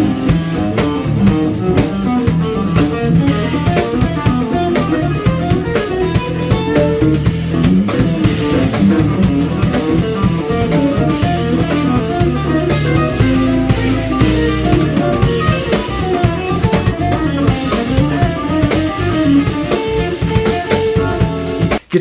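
Small live band playing a funky groove: guitar lines over drum kit, bass guitar and keyboard. The music cuts off abruptly just before the end.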